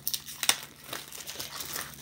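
Clear plastic wrapping crinkling and spiral-bound paper notepads rustling as they are handled, in a string of short rustles, the loudest about half a second in.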